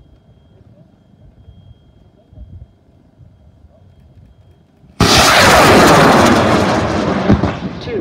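AMW M3000 high-power rocket motor with Super Tiger propellant igniting about five seconds in: a sudden, very loud roar of the launch that holds for a couple of seconds, then starts to fade as the rocket climbs away.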